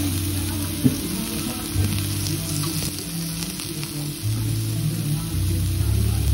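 Slices of fresh pork belly sizzling on a hot cast-iron pot-lid griddle, a steady frying hiss, with one sharp tap of metal tongs about a second in.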